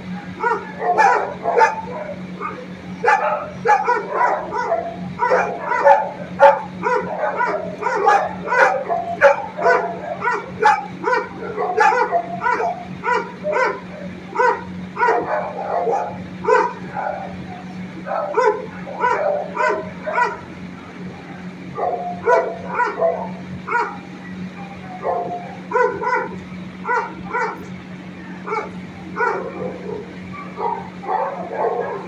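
Dogs barking in an animal shelter kennel: a rapid run of barks, several a second, with a few short lulls, over a steady low hum.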